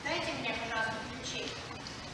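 Speech only: an actress's voice speaking a line on stage.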